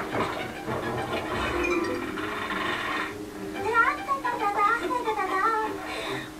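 Indistinct voices in a room, clearer in the second half, over a steady low hum.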